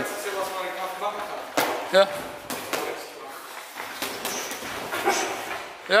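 Kickboxing sparring: gloved punches and kicks landing, with feet moving on the ring mat, in a large echoing hall. The loudest strike comes about two seconds in, with a short vocal sound on it.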